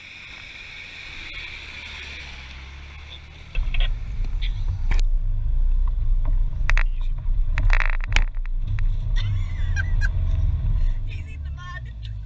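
A four-wheel drive's engine rumbling at low speed. About three and a half seconds in the sound jumps louder to heavy engine and tyre rumble heard from inside the cabin on a rough dirt track, with several sharp knocks and rattles.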